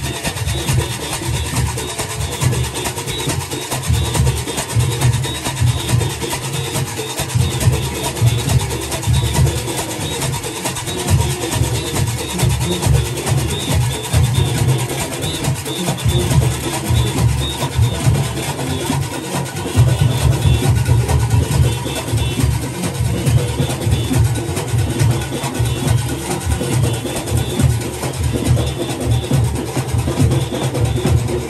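Junkanoo rhythm section playing a continuous loud beat: goatskin drums pounding, with cowbells clanging and whistles blowing over them. It gets louder about two-thirds of the way through.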